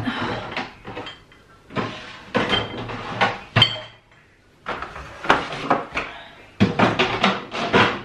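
Jars and bottles being set back onto fridge shelves: clinks and knocks in three clusters, with a short pause about four seconds in.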